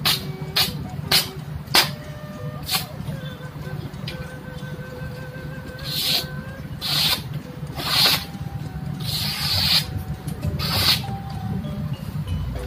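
A freshly sharpened slaughtering knife slicing through a sheet of paper to test its edge: a few crisp paper crackles in the first three seconds, then five short hissing swishes as the blade slits the sheet through the second half.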